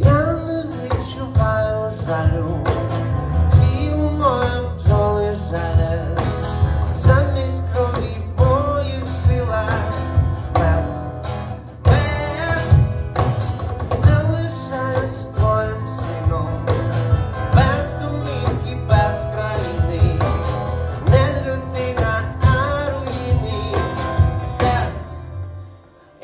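A live band playing: strummed acoustic guitar over electric bass and keyboard with a hand drum keeping time, and a male voice singing the melody. The music thins almost to nothing just before the end.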